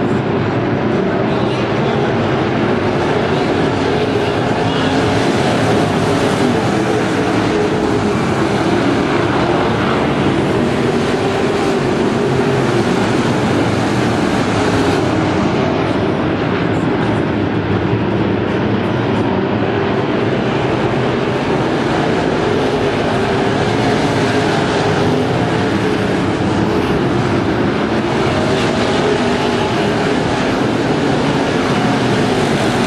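Engines of a pack of IMCA dirt-track race cars running at racing speed, several cars at once, loud and continuous without a break.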